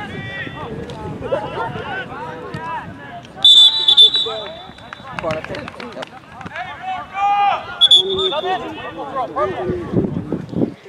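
Referee's whistle: two quick blasts about three and a half seconds in, and one shorter blast near eight seconds, over the voices of players and spectators calling out.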